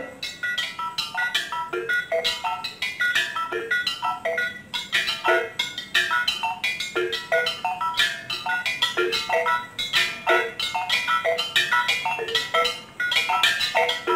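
Balinese gamelan of small bossed kettle gongs struck with mallets, playing dense, fast interlocking patterns of bright, ringing metallic notes. The whole ensemble comes in with a sudden loud accented stroke at the very start.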